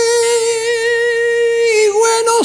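A male flamenco singer holds one long high sung note in a milonga, with a slight wavering vibrato, dipping in pitch just before the end.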